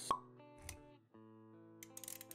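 Quiet intro music of sustained notes, with a short sharp pop sound effect just after the start and a softer low thud about half a second later; the music drops out for a moment about a second in and then comes back.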